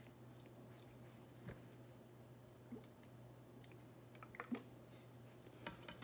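Hand rubbing olive oil into raw red snapper fillets on a cutting board, heard only faintly: a few soft clicks spread over a few seconds, over a steady low hum.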